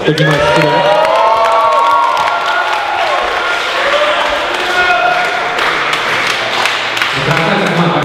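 A crowd clapping and cheering, with whoops and shouts rising and falling over dense applause.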